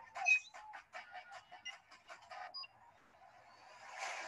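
A rapid run of light clicks or taps, about six a second, that stops about two and a half seconds in.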